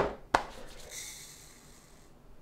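Two sharp knocks of plastic growing trays being stacked, then about a second of fine, high hissing as small kohlrabi seeds pour from a foil pouch into a plastic cup on a scale.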